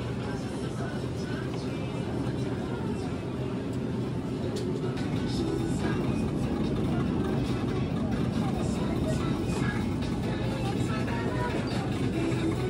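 Supermarket ambience: a steady low hum under faint voices of shoppers and background music.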